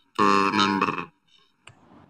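A man's voice drawing out one short, unbroken spoken sound that ends about a second in, followed by a brief click and faint room tone.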